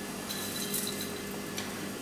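Quiet room tone with a faint steady hum and no distinct event.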